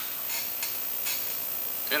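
A steady, even hiss with a few faint soft clicks.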